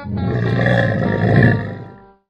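A camel bellowing once, loud, for about a second and a half and then fading out, over a guitar music bed.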